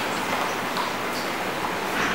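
Steady background hiss with no distinct event standing out.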